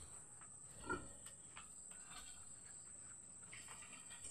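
Near silence, with one short faint grunt from a domestic pig about a second in.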